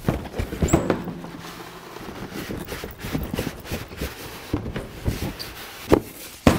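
Cardboard box and styrofoam packaging being handled: irregular knocks, scrapes and rustles as the box is opened and the foam packing block is lifted out.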